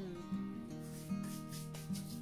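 Soft background acoustic guitar music playing steadily, with faint rubbing of hands brushing off pastry crumbs.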